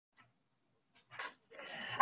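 Near silence, then about a second in a brief faint rustle, followed by a faint steady hiss of room tone.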